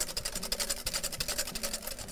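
Wire whisk beating a thick egg-yolk and butter béarnaise emulsion in a glass bowl, rapid even strokes scraping against the glass.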